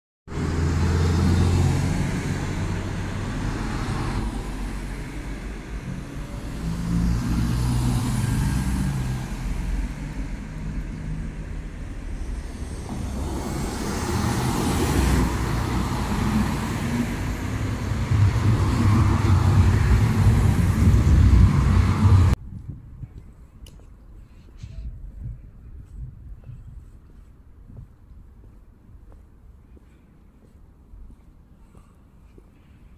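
Street traffic: cars passing close by, the rumble swelling several times as vehicles go past. About three-quarters of the way through it cuts off suddenly to a much quieter, faint background.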